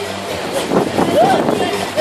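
Water splashing as swimmers thrash about in a pool playing water polo, with shouting voices over it.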